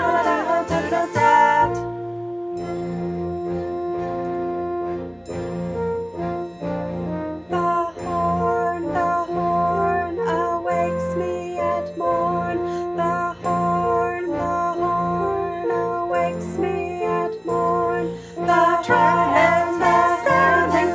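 Multi-part singing breaks off about two seconds in. Brass then plays a horn-call melody in several overlapping parts on steady held notes, and singing comes back in near the end.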